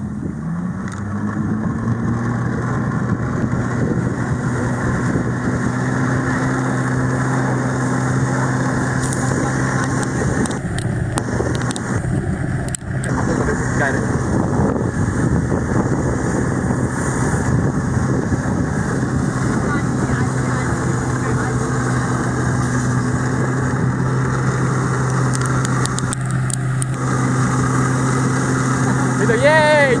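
Jet ski engine revving up about a second in and then running steadily at high revs to pump water through the hose to a flyboard, over the hiss of the water jets.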